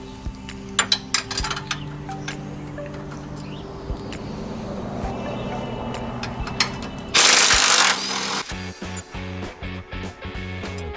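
Background music throughout, over which a Craftsman impact wrench on an extension and 18 mm socket fires one short, loud burst about seven seconds in, running out a tow-hook bolt. A few light metal clinks of hand tools come in the first seconds.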